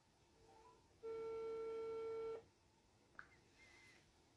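Telephone ringback tone from a phone on speaker while an outgoing call rings unanswered: one steady beep about a second and a half long.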